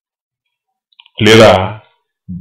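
Silence, then a couple of faint clicks about a second in, followed by a short spoken word in a man's voice.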